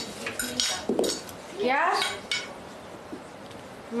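A quick run of light clinks and clatter in the first second, like dishes and cutlery being handled, followed by a voice saying one short word.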